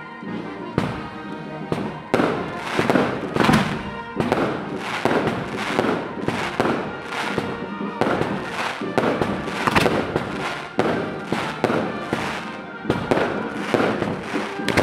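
Festival fireworks: a dense, continuous barrage of loud bangs and crackling firecrackers, starting about a second in, with music playing underneath.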